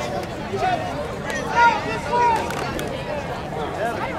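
Spectators' voices in football stadium stands: several people talking and calling out over a general crowd murmur.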